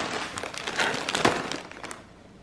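Plastic and foil snack packets crinkling as they are handled and moved about in a cardboard box: irregular crackles that fade near the end.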